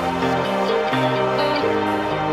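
Electronic dance music: a trance-style mashup with sustained synth chords whose notes change about every half second.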